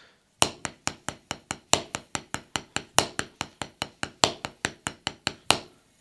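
Drumsticks playing a double paradiddle on a rubber practice pad that sits on a snare drum: a steady run of crisp strokes, about five a second, with an accented stroke opening each six-note group.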